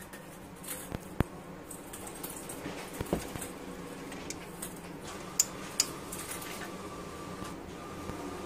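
Scattered sharp clicks as the push switch in a light-up plastic tumbler's lid is pressed and the cup is handled, over a steady low hum.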